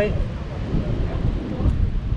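Wind rumbling on the microphone over the steady rushing noise of rough surf.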